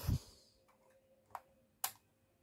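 Two small sharp clicks, about half a second apart with the second louder, from fingers working the roof ladder of a Siku die-cast model fire engine as they try to pull it off.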